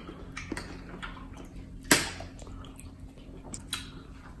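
A metal spoon clicking and scraping against a plate while stirring. There are a few light clicks and one sharper click about two seconds in, over a low steady hum.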